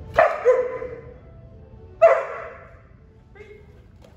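A large dog barking three times: two quick barks just after the start and a louder single bark about two seconds in.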